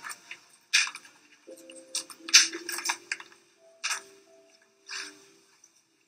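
Quiet background music with a few held notes, and several short rustling noises, a cluster of them close together around the middle.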